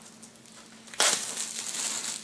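Clear plastic shrink wrap being pulled off a CD album box: quiet at first, then about a second in a sudden loud crinkling of the plastic that carries on.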